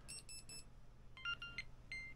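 Insta360 GO 3 camera powering on: three quick electronic beeps, then a short stepped startup chime and one more beep near the end.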